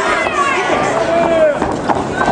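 Ringside crowd at an MMA fight shouting and yelling over each other. In the second half, several sharp smacks of strikes landing.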